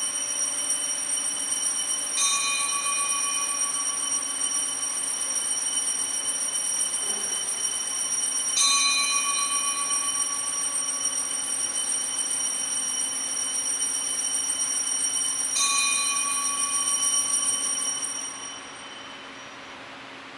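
Altar bells ringing without a break for about eighteen seconds, with three stronger rings about six to seven seconds apart, then stopping. This is the consecration ringing that marks the elevation at Mass.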